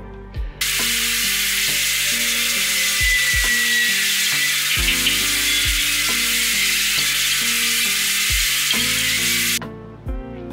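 A steady hiss that starts abruptly just after the start and cuts off abruptly near the end, over background guitar music.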